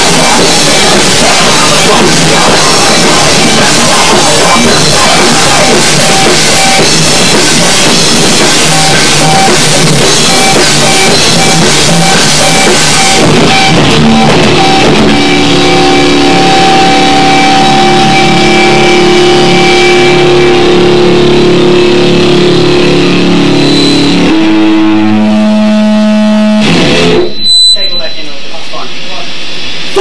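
Rock band rehearsing very loud: distorted electric guitars, bass and a drum kit playing hard. About halfway through, the cymbal wash falls away and the guitars ring on in long held notes. A sudden break comes near the end.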